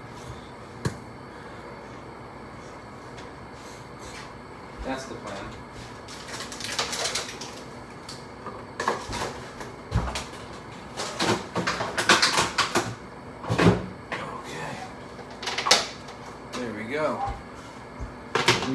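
Kitchen handling noises: a series of sharp knocks and clicks of cookware, jars and cupboards being moved, loudest in the second half, over a steady low hiss.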